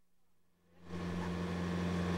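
Near silence, then about a second in a steady engine hum fades in and grows: a sailboat's engine running while under way.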